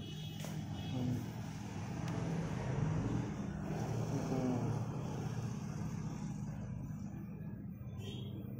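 TVS NTorq 125 scooter's single-cylinder engine idling steadily, a little louder a couple of seconds in.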